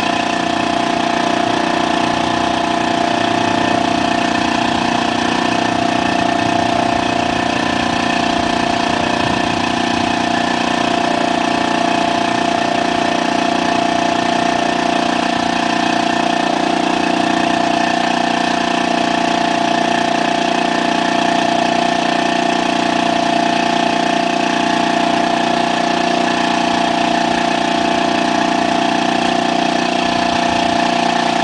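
Portable air compressor running steadily to fill its tank, a loud, even machine drone that holds one pitch throughout.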